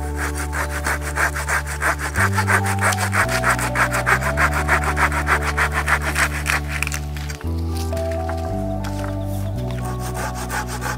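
Hand saw cutting a dead log in quick back-and-forth strokes, over background music with low sustained chords. The sawing is strongest in the first seven seconds and then grows fainter.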